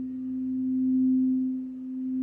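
A frosted crystal singing bowl sung with a mallet rubbed around its rim, giving one steady low hum with a faint higher overtone. The hum swells and fades about every one and a half seconds.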